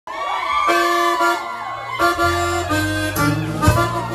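A live Tejano band playing an instrumental opening: a gliding lead melody over steady bass notes, with a drum hit near the end.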